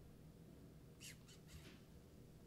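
Near silence: room tone, with a few faint, short hisses about a second in.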